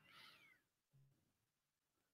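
Near silence: room tone, with only a very faint, brief falling sound in the first half-second.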